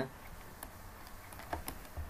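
A few light clicks from operating a computer while scrolling through a document: one faint click early, then three close together near the end.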